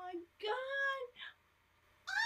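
A woman's high-pitched, wordless squeals of excited surprise: a longer rising-and-falling cry about half a second in and a short one just after a second in.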